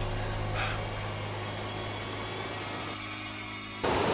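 A low, steady drone that slowly fades, with a brief breathy sound about half a second in. It changes abruptly about three seconds in and gives way to a sudden louder sound just before the end.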